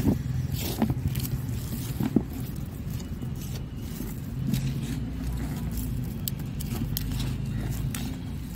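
A steady low rumble, like a motor or distant traffic, runs under scattered light clicks and scrapes, the loudest near the start.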